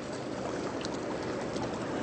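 Steady wash of water and wind around a small boat on the bay.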